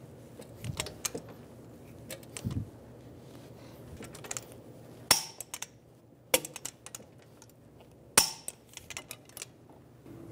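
Torque wrench on the lower strut-to-knuckle bolt, with light ticks and a dull knock, then three sharp clicks about five, six and a half, and eight seconds in: the wrench breaking over as the bolt reaches its 155 ft-lb setting.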